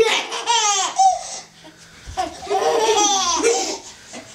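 A baby laughing in two high-pitched bouts, one right at the start and another from about two seconds in.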